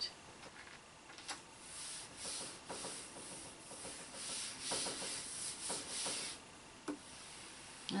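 Hands rubbing and smoothing a sheet of paper pressed onto a gel printing plate, a soft dry swishing in a series of strokes that swell and fade, to transfer the paint onto the paper.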